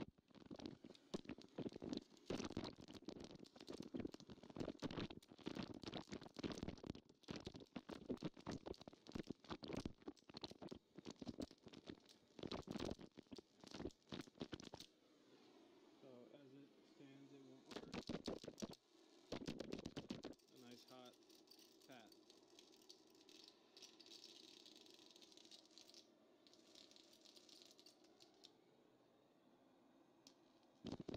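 High-voltage arc of a Jacob's ladder driven by a ZVS driver and two flyback transformers, crackling and buzzing irregularly for about the first half. It stops, then two short bursts of arcing come a few seconds later.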